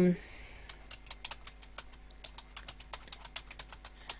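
Typing on a computer keyboard: a quick, uneven run of key clicks starting about a second in and lasting about three seconds.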